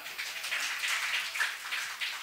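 Audience applauding: a round of clapping that starts suddenly and begins to die away near the end.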